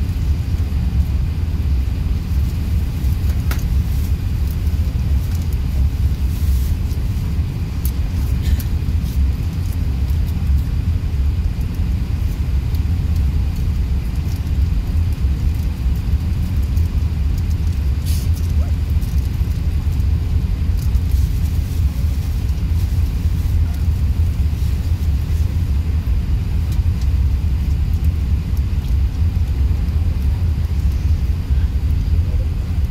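Steady low rumble of airliner cabin noise inside an Airbus A380 rolling along the runway, with a few faint clicks.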